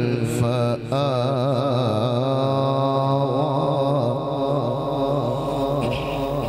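A man reciting the Quran in melodic tajweed style, holding long ornamented notes with a wavering vibrato, with a short break for breath about a second in.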